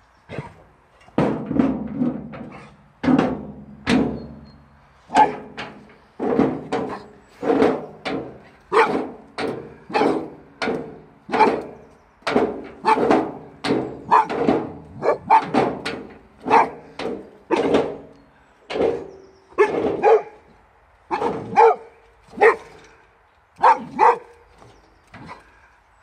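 Boxer dog barking over and over at a wheelbarrow, sharp single barks at about one a second, now and then two close together.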